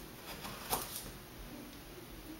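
A metal teaspoon faintly clicking and scraping while scooping bicarbonate of soda for a measured teaspoonful, with one slightly louder tap about three-quarters of a second in.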